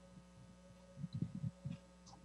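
Faint steady electrical hum on a video-call audio line. A few soft, low thumps come about a second in.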